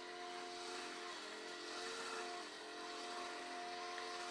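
Faint steady hum made of several sustained tones over a light hiss; some of the tones shift slightly in pitch about halfway through.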